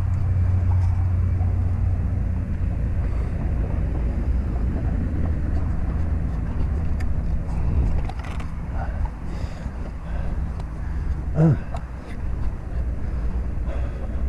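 Steady low rumble of a bicycle riding on a paved path: tyre and road noise mixed with air rushing past the camera's microphone.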